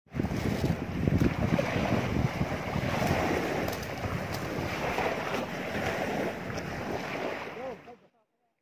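Wind buffeting the microphone over the wash of small surf on a beach, with a few light ticks.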